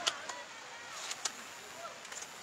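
Distant shouts of players and spectators at a football match, with two sharp ticks: one right at the start and one a little past halfway.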